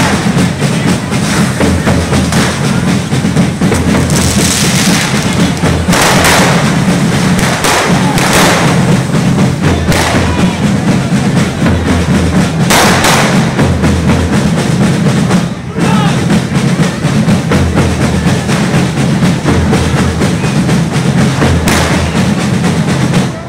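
Correfoc tabals (big drums) beating a steady rhythm, with fireworks spraying sparks that hiss and crackle in several louder bursts over the drumming.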